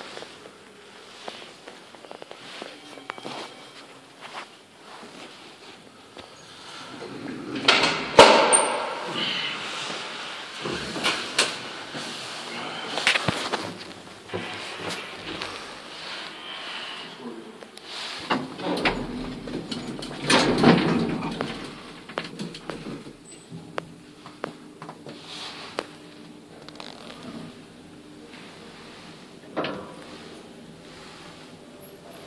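KONE-modernised passenger elevator: its sliding doors run with loud clattering stretches about eight seconds in and again around twenty seconds, then the car rides upward with a low steady hum.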